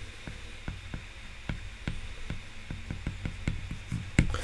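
A stylus tip tapping and scratching on an iPad's glass screen while handwriting a word: a quick, irregular run of light clicks over a faint low hum.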